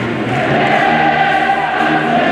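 A large group of band members singing together as a choir, holding long sustained notes.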